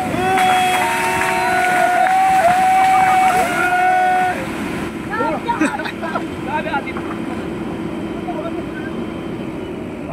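People shouting long, drawn-out calls as the excavator-pushed boulder goes down the slope. About four seconds in, these give way to shorter, excited cries over the steady hum of the excavator's engine.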